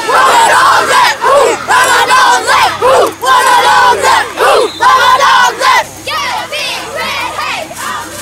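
Youth football players in a sideline huddle chanting together in loud, rapid rhythmic bursts of massed young voices. About six seconds in, the chant drops off into scattered, quieter shouting.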